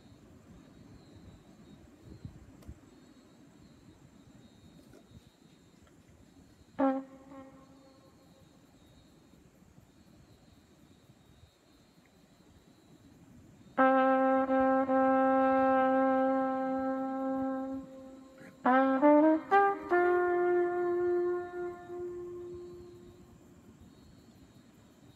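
Solo trumpet playing a slow, unaccompanied phrase. A short note comes about seven seconds in; after a long pause come a long held note, a quick run of short notes, and a higher held note that slowly fades.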